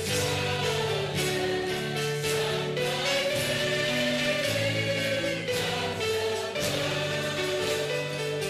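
Slow choral music: voices singing held chords that change every second or so over a steady bass, in the manner of a hymn.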